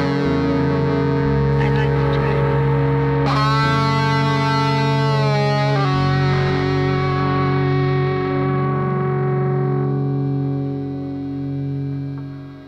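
Atmospheric black metal: sustained, distorted electric guitar chords drenched in effects, ringing out and thinning toward the end.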